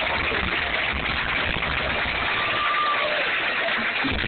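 A motor running steadily under a dense wash of outdoor noise, with a faint brief whistle-like tone a little past halfway.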